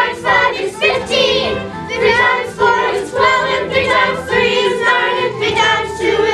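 A group of children singing a song together over musical accompaniment.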